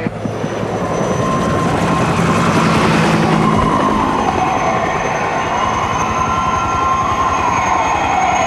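A dense, steady mechanical rumble that builds over the first few seconds, with a thin squealing tone that slides down in pitch near the end. It is a sound effect of the rail-vehicle kind.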